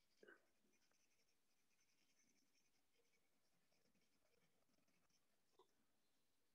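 Near silence, with the very faint scratching of colour being applied to paper as a drawing is coloured in, and a couple of tiny ticks near the start and end.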